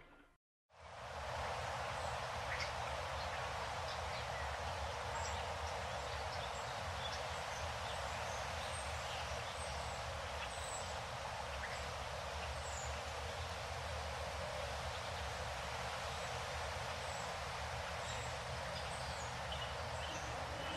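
Steady outdoor ambience coming in about a second in: an even, hiss-like background with faint, scattered bird chirps.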